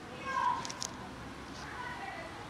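Kitten meowing: a short, clear meow about half a second in, the loudest sound, and a second, fainter meow near the end.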